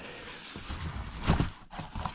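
A large cardboard shipping box being handled: hands rubbing and shifting on the cardboard, with a dull knock just past the middle and a lighter one near the end.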